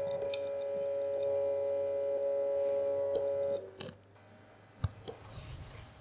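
Stepper motor driven by an A4988 driver, giving a steady whine of two pitches as it drives the Y axis toward its limit switch for calibration. The whine cuts off suddenly about three and a half seconds in, and a single sharp click follows about a second later.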